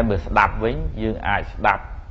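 A man's voice speaking in Khmer, the pitch rising and falling in short phrases, as a Buddhist monk delivers a dharma sermon.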